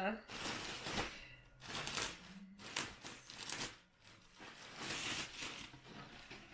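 Clear plastic packaging crinkling and rustling in irregular bursts as a straw handbag is pulled out of its bag.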